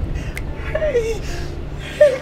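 A person crying: short wavering whimpers and gasps, one about a second in and another near the end, over a steady low hum.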